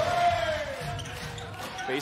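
Basketball game sound in an arena: one long drawn-out voice whose pitch slides down over about a second and a half, while the sound dies away.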